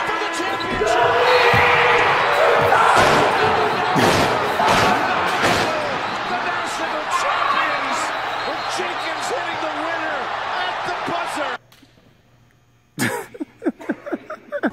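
Loud, echoing gym noise of repeated thuds and slams with voices mixed in. About eleven and a half seconds in it cuts to near silence, then sharp knocks start again.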